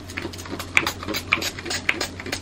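Quick, irregular light taps and clicks from hands handling things close to the microphone, several a second.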